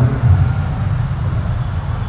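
A steady low rumble of background noise, with no other distinct event.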